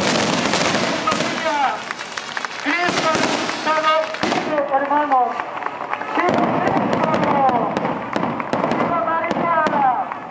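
Firecrackers going off over a crowd: a thick crackle for about the first four seconds, then separate sharp pops, with many voices calling out.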